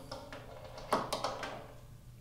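A few light clicks and knocks about a second in, from hands handling the television's power cable on a wooden tabletop.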